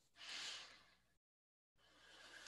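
Near silence over a video-call line: one faint, short breathy exhale about a quarter second in, then the audio drops to dead silence.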